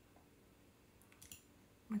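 A few light clicks about a second into a faint, quiet room tone, from working a computer's controls; a woman's voice begins right at the end.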